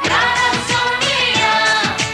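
Pop song playing, with a singing voice over a full backing track with a regular beat.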